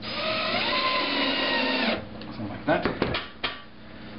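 Electric screwdriver driving a screw into the timber top of a wooden stomp box: its motor whine rises in pitch as it spins up, holds steady and stops after about two seconds. A few sharp clicks and knocks follow.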